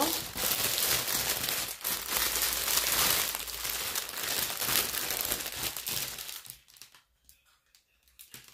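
Paper or plastic wrapping crinkling and rustling steadily as a parcel's contents are handled and unwrapped by hand, dying away about six and a half seconds in.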